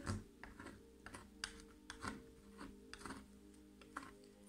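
Clear plastic scraper dragged repeatedly across a metal nail-stamping plate to clear off excess black polish: about a dozen quick, light scrapes and clicks, quiet, over soft background music.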